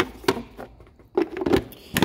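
Black plastic cover of a car's engine-bay fuse box being set back on and pressed shut: a few sharp plastic clicks and knocks, most of them in the second half.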